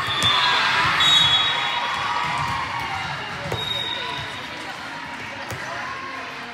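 Echoing din of a multi-court indoor volleyball hall: a volleyball bouncing on the court floor and a few sharp ball impacts over crowd chatter and shouting players. It is loudest in the first two seconds.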